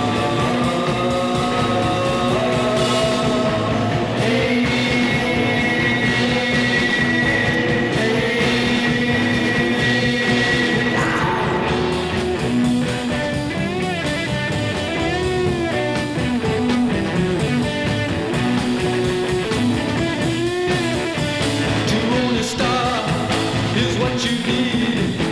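Late-1960s psychedelic rock recording: electric guitars, bass and drums playing steadily. Long held notes give way about halfway through to wavering, bending ones.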